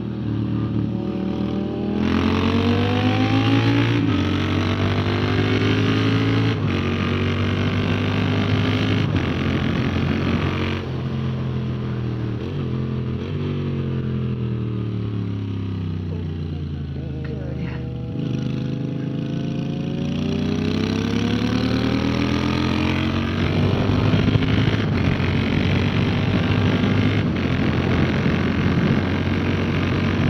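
Moto Guzzi V7 Stone's air-cooled V-twin on track, revving hard through several upshifts, each marked by a brief break, then falling in pitch as the bike slows for a corner in the middle and pulling hard again over the last third. Wind rush lies over the engine.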